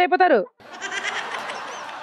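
A woman's voice trails off with a falling pitch, then after a short gap comes a steady, even wash of crowd noise from the gathered audience.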